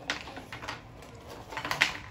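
Thick, churro-shaped Cinnamon Toast Crunch Churros cereal pieces pouring from the box into a plastic bowl: a patter of small clicks that comes in bunches, the loudest bunch near the end.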